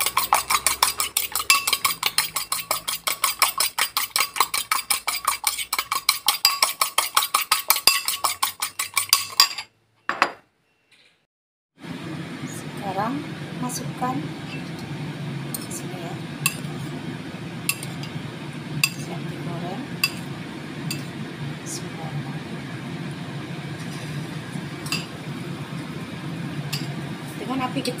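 An egg beaten in a ceramic bowl with a utensil: rapid, even clinking against the bowl for about nine seconds. After a short silence, a steady low hum from the stove under a wok of heating oil, with occasional light clicks.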